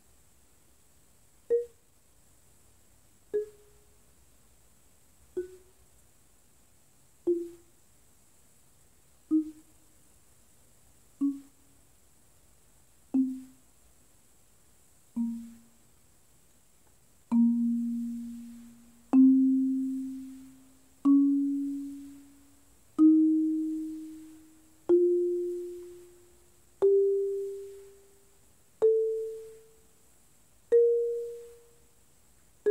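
Marimba played one note at a time with a yarn mallet, about one note every two seconds, on a B-flat melodic minor scale. The first half descends in short, damped dead strokes. Just past the middle the scale climbs back up from low B-flat with normal strokes that ring on.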